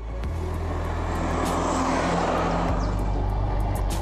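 A Renault 4 driving past: its small four-cylinder engine and tyre noise swell to a peak about halfway through, then the engine note drops and eases away as it goes by.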